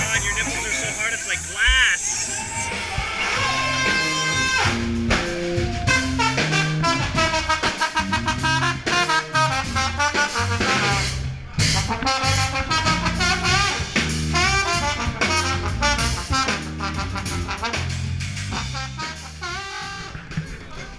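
Ska-reggae-metal band music with a trumpet and trombone horn section playing over bass and drums.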